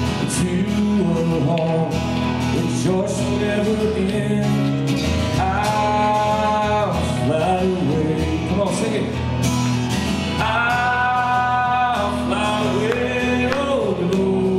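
A man singing while strumming an acoustic guitar, the chords steady under the melody, with two long held sung notes, one about halfway through and one a few seconds later.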